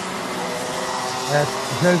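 Several two-stroke Mini Max racing kart engines running on track, a steady mechanical whine. The commentator's voice comes in over it near the end.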